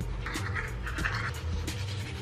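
Manual toothbrush scrubbing teeth, with short scratchy brushing strokes in the first half.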